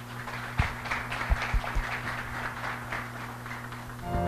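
Audience applauding, a dense patter of many hands clapping, over a steady low electrical hum.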